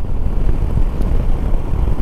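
Shineray SHI 175 motorcycle being ridden: a steady low rumble of the engine mixed with wind on the microphone.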